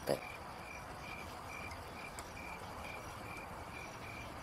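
A cricket chirping faintly and evenly, about two to three short chirps a second, over a low background hum.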